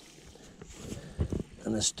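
A wooden stick stirring thick wet meal porridge in a rubber bucket, with a few dull knocks just past a second in. A man's voice starts near the end.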